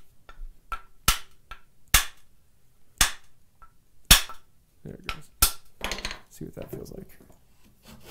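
Sharp hammer taps on the wooden body of a skewed rabbet plane, about five spaced roughly a second apart, knocking the iron back to lighten a cut that was too heavy. A short scrape follows near the end.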